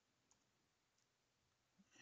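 Near silence, with a few very faint clicks from computer keyboard keys in the first second.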